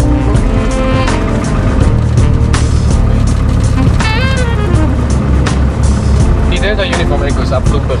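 Cessna 152's Lycoming four-cylinder engine running steadily, heard inside the cockpit, mixed with background music. A gliding pitched sound comes in about four seconds in.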